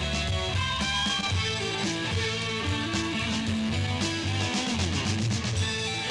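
Rock band playing an instrumental passage with no singing: electric guitar over bass guitar and drums keeping a steady beat.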